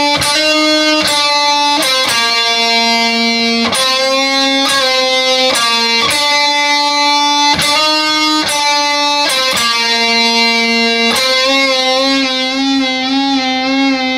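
Distorted electric guitar playing a lead line of held, ringing notes that change every half-second to a second or so. Near the end come repeated half-step string bends and releases, so the pitch wavers up and down.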